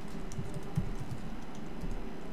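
Typing on a laptop keyboard: a run of irregular keystrokes.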